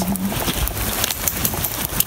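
Rain pattering, a dense scatter of small ticks of drops over a steady hiss.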